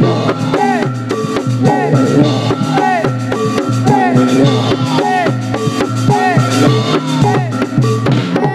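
Live accompaniment for a Javanese warok dance: drums beating a steady rhythm under a pitched melody, played loud through a sound system.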